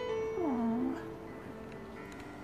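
Soft piano music with held notes, and a single cat meow about half a second in: one cry that falls in pitch and then lifts again.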